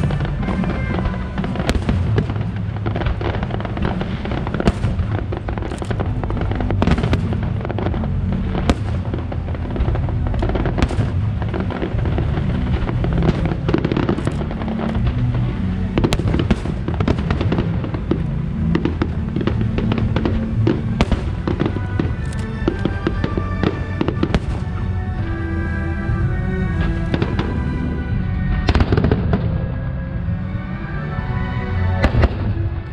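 Fireworks display: a continuous barrage of aerial shell bursts and crackles, many bangs in quick succession over a steady low rumble, with music playing underneath that comes through more clearly near the end.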